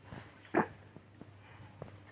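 Soft rustling of crepe fabric and plastic sheeting being handled by hand, with one brief louder sound about half a second in and a few faint clicks.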